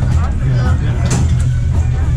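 Foosball being put into play: one sharp clack of the ball or a rod about a second in, over background chatter and music.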